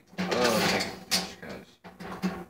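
Drum key turning a snare drum's tension rods at the rim, a quick metallic rattling, with one sharp click a little past a second in.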